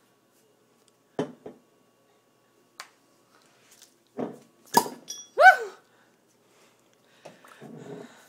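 Glass beer bottle being handled and worked open: a few soft knocks, then a sharp click with a brief metallic ping about five seconds in. Right after it comes a short high-pitched cry that rises and falls in pitch, the loudest sound here.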